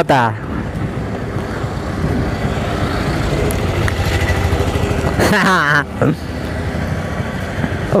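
Hero Splendor Plus XTEC's small single-cylinder engine running with a steady low rumble. A man's voice cuts in briefly about five seconds in.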